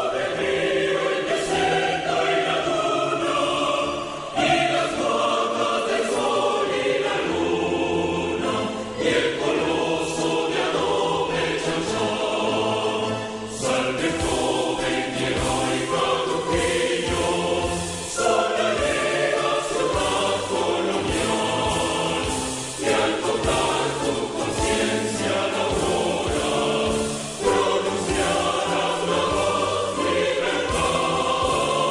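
Choral music: a choir singing in phrases of a few seconds each, with brief dips in loudness between them.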